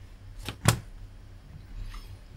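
Two computer mouse clicks in quick succession about half a second in, over a low steady hum.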